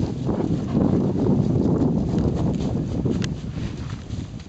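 Footsteps and rustling through grass and fallen dry leaves close to the microphone, an uneven shuffling that runs throughout.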